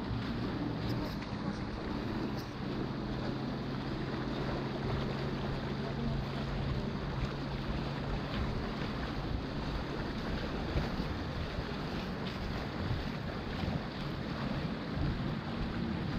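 Steady wash of wind on the microphone and sea lapping at the shore rocks, with the faint low drone of a distant motorboat engine through the first half or so.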